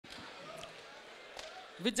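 Faint hall room tone with two soft thumps, then near the end a woman starts calling out a drawn-out greeting through a microphone and PA.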